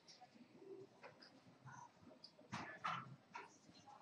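Faint card-room background, quiet enough to be near silence, with a few short clicks and two louder knocks a little past halfway.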